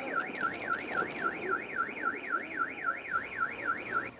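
An electronic alarm warbling rapidly and evenly up and down in pitch, about four sweeps a second, over a mix of lower background noise. It cuts off at the end.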